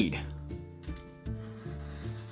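Pencil scratching along a ruler on poster board, marking a line to cut, over soft background music.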